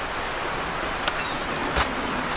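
Steady rush of road traffic on a highway below, with a single thump near the end.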